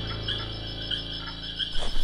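Crickets chirping in a steady run, about three chirps a second, over a low steady hum: a night-time ambience sound effect.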